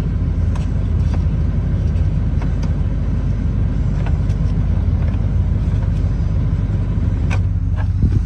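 The pickup's 5.7-litre V8 idling steadily, heard from inside the cab as a low rumble. A few sharp clicks are heard, the clearest near the end.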